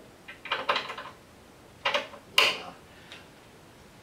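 Small metal cabinet-hardware parts rattling and clicking as they are handled and set down on a tabletop, in three short bursts within the first three seconds.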